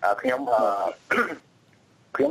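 Speech: a voice reading radio news, which breaks off about a second and a half in into a short pause.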